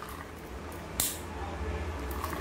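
Olympic carbon-bodied spinning fishing reel being cranked by hand, turning lightly and smoothly with a faint whir, and one sharp click about a second in.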